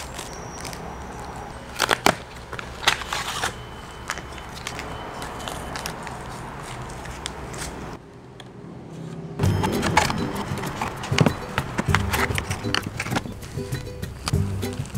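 Tabletop handling of a cardboard food box and plastic packaging, with scattered clicks, crinkles and scrapes. After a short dip about eight seconds in, background music comes in under the handling.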